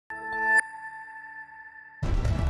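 Short electronic logo sting for a TV news programme. A chord of steady tones swells up to a bright hit about half a second in, then a single high ringing tone slowly fades away.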